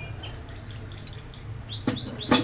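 A small bird chirping in short, quick notes, about four a second, with a single sharp knock near the end over a low steady hum.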